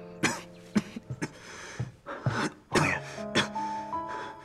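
A woman coughing in a run of short, harsh coughs, about seven in all, over soft sustained background music.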